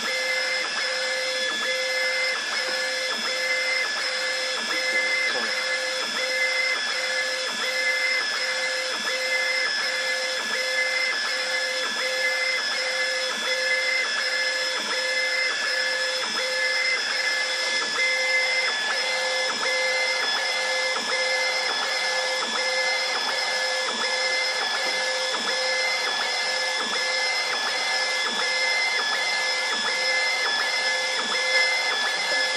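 Inkcups DirectJet 1024 UV LED rotary bottle printer running a print: the inkjet carriage shuttling back and forth over the bottle. A steady machine whine that pulses at an even, repeating rhythm.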